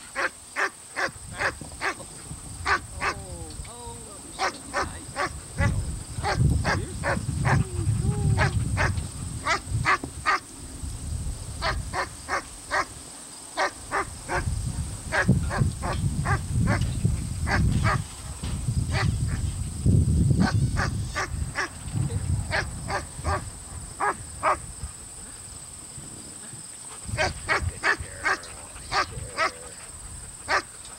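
German Shepherd puppies barking and yipping over and over in short, high calls, about two to three a second with a few pauses, over a low rumble that swells and fades.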